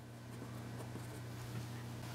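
Metal mechanical drafting pencil writing on paper, faint, with a low steady hum underneath.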